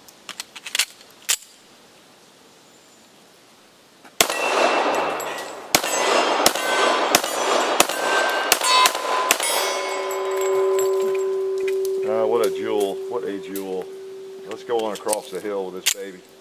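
A Colt 1911 WWI-reissue pistol in .45 ACP fired seven times at a steady pace, a little under a shot a second, each shot met by the clang of steel targets. After the last shot a struck steel target rings on with a steady tone for several seconds. A few light metallic clicks of gun handling come before the shooting.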